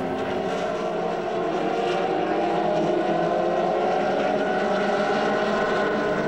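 Ferrari 360 Challenge race car's V8 engine running hard and steadily, its note rising slightly in pitch and then holding.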